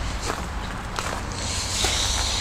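A person walking, footsteps on gravel, with a steady low rumble on the handheld microphone.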